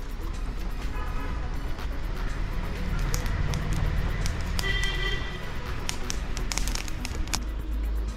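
Background music over a steady low rumble, with a cluster of sharp metallic clicks in the second half as the wire grill basket is moved on the charcoal fire.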